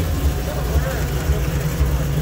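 Pontiac Firebird's engine idling with a steady low rumble.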